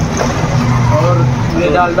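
A person talking indistinctly over a steady low engine hum of passing road traffic.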